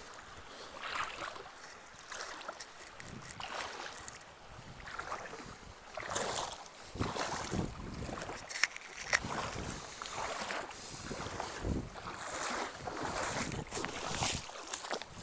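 Bare feet wading through a shallow, rocky stream, the water splashing and sloshing with each step, about one step a second.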